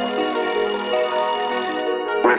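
Break in a pop song: the drums and bass cut out, leaving a steady electronic telephone-style tone held for a couple of seconds.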